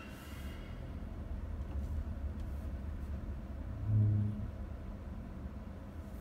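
Low, steady rumble of a 2017 Toyota Corolla's four-cylinder engine running, heard from inside the cabin. A brief, louder low hum swells and fades about four seconds in.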